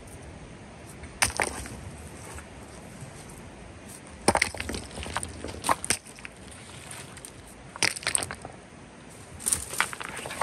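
River cobbles knocking and clacking against each other as rocks are moved by hand. The clatters come in short clusters: a little after a second in, around four to six seconds, near eight seconds and again near the end.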